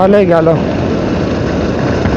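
Steady rush of wind and road noise from a motorcycle being ridden along a road, after a single spoken word at the start.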